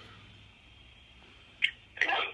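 A lull in the talk: faint room tone with a low steady hum. A single short, high blip comes about one and a half seconds in.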